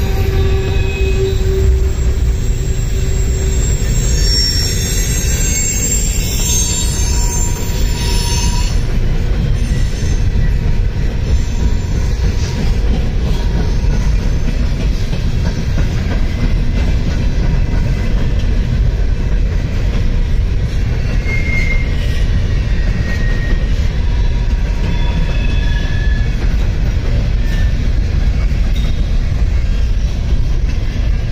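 Freight train cars rolling past close by: a steady, loud rumble of steel wheels on rail, with a few brief thin wheel squeals now and then.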